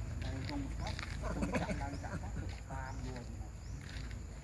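People talking, in words the transcript does not catch, over a steady low rumble.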